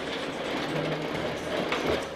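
Motorised garage door running with a steady rattling rumble as it moves on its own.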